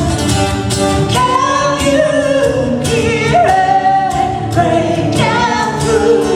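A woman singing live to guitar accompaniment, holding long notes from about a second in, over steady strumming.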